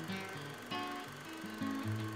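Music: acoustic guitar playing single plucked notes, a few per second, each ringing out and fading.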